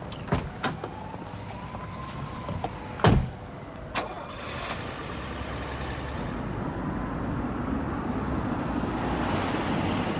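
A car door slams shut about three seconds in, after a couple of light clicks, with a smaller knock a second later. Then a limousine's engine and tyre noise build steadily as it drives off.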